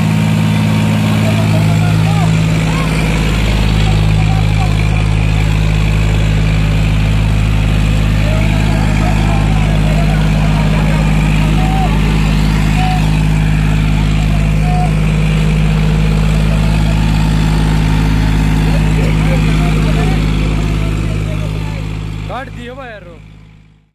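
John Deere 5105 tractor's three-cylinder diesel engine running at a steady, constant speed while pulling a harrow through deep sand, with crowd voices over it.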